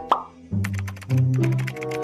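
A short plop sound effect, a quick upward blip, just as a title card pops up, followed by background music with a steady beat and held low notes.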